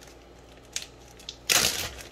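Plastic zip-top bag being handled: a couple of faint ticks, then a louder crinkling rustle about a second and a half in.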